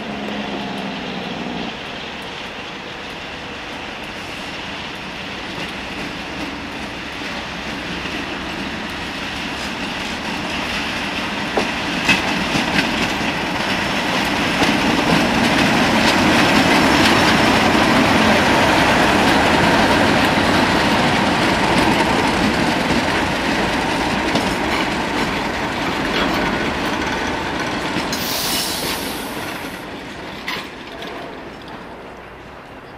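A Class 37 diesel locomotive (English Electric V12 engine) hauling an engineering train slowly past, its engine and wheels growing louder to a peak about halfway through as it passes close by, then fading as the wagons roll past. A few sharp clicks from the wheels over rail joints come just before the peak, and a brief hiss comes near the end.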